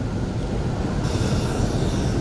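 Breath and air noise on a close microphone as a Quran reciter pauses between phrases: a low rumble, with a hiss joining about a second in as he draws breath.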